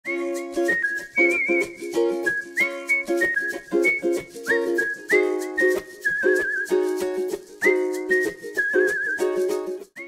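Upbeat background music: a whistled melody, with a little vibrato on its held notes, over short, repeated plucked-string chords.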